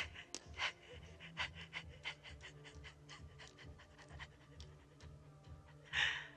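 A terrified woman panting and sobbing in quick, shaky breaths, strongest in the first couple of seconds and fainter after, over a low, steady drone of film score.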